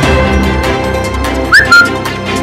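Background music, and about one and a half seconds in a loud, short whistle: a quick upward slide, then a briefly held high note.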